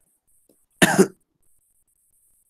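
A person coughs once about a second in: a short, loud double burst.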